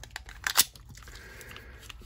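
Extended magazine being pushed into a Beretta Pico .380 pistol's grip: a few light clicks, then one sharp click about half a second in as it latches.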